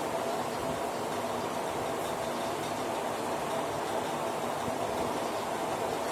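Steady background noise with a faint steady hum running through it, unchanging throughout.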